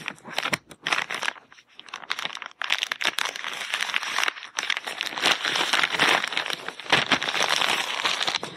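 A book parcel's wrapping being cut open with scissors and torn off a hardback, with dense, irregular crinkling and tearing throughout.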